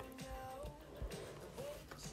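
Faint background music with thin sustained notes, between narrated steps.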